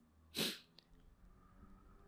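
A single short, sharp breath noise from a person about half a second in, with faint room hum and hiss after it.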